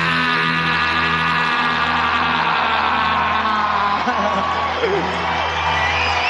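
A comic holiday pop song playing: a man's singing voice holds a long note over the accompaniment, and then another near the end.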